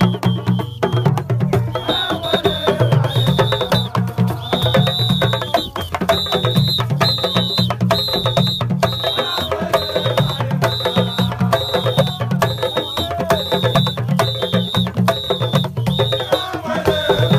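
Drum and percussion music with rapid, dense strokes. From about two seconds in, a high steady tone sounds in short stretches over and over.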